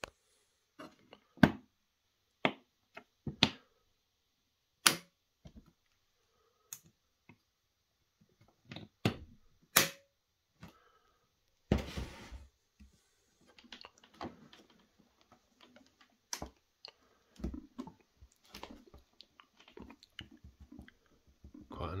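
Scattered sharp clicks and knocks from handling an aluminium-framed tool carry case: its latches being snapped open and the lid lifted, with softer rubbing and handling noise in the second half.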